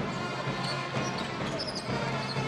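Basketball being dribbled on an indoor court, a bounce about every half second, over steady arena crowd noise.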